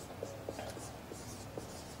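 Marker pen writing on a whiteboard: a few short, faint squeaky strokes.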